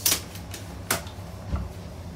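Two sharp clacks about a second apart, then a duller low thump, over a steady low hum inside a train.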